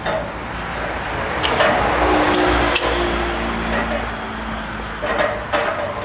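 Toyota 5L diesel bottom end being turned over by hand with a bar and socket on the crankshaft nose, with light rubbing and a sharp metallic click about three seconds in from the freshly fitted rods and pistons moving. This is a check that the crank spins freely after the big-end nuts have been torqued. A steady hiss underlies it.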